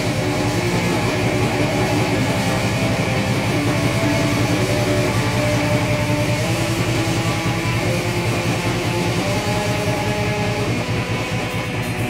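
Band playing an improvised rock-metal jam, with electric guitar to the fore over a fast, steady beat.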